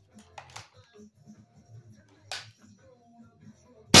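Walther Reign PCP bullpup air rifle firing one shot near the end, a single sharp report with a short ring-off.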